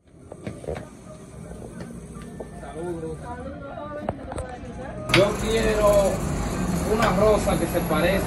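Indistinct voices, faint at first, then louder from about five seconds in over a steady background hum.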